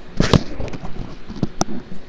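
A few sharp clicks and knocks: a quick cluster near the start, then two single clicks later, over a low steady hum.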